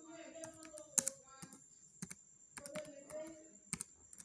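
Slow, one-handed typing on a laptop keyboard: single keystrokes clicking at uneven intervals as a search term is entered.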